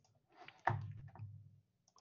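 A single computer mouse click about two-thirds of a second in, with a faint low tail after it.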